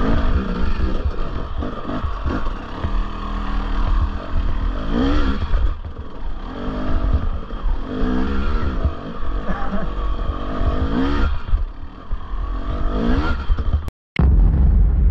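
Husqvarna TE 300i two-stroke dirt bike engine revving up and down repeatedly under load as it climbs a rocky hill, its pitch rising and falling several times over a heavy low rumble.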